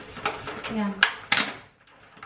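Several sharp clicks and knocks of eggs being cracked against a hard edge.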